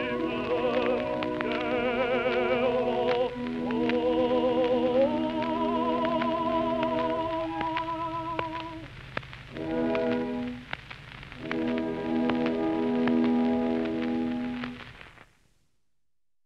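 Closing bars of an early acoustic gramophone recording of a song: held notes with a wide wavering vibrato give way to sustained chords, with record surface crackle throughout. The music ends about fifteen seconds in.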